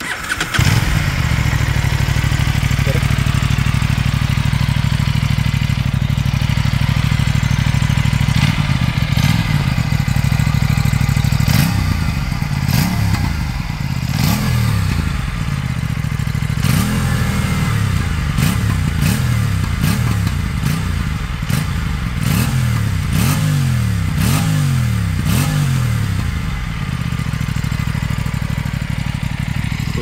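Aprilia RS 457 parallel-twin engine firing up, settling to a steady idle, then from about halfway through revved in quick throttle blips that rise and fall about once a second, before dropping back to idle near the end.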